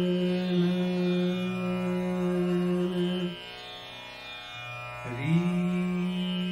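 Male dhrupad vocalist holding a long sung note in raag Jaijaiwanti over a steady tanpura drone. The voice breaks off about halfway through, leaving the drone alone, then comes back near the end with an upward slide into the next held note.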